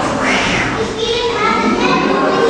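Children's voices chattering and calling out, with indistinct talk from other people around.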